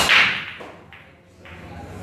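A hard 9-ball break on a pool table. The cue strikes the cue ball with a sharp crack, then the rack bursts apart in a loud clatter of balls knocking together. Fainter clicks follow as the scattered balls strike each other and the cushions.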